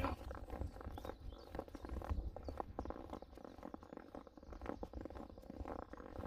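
Footsteps on a thin layer of snow as someone walks on steadily, over a low rumble.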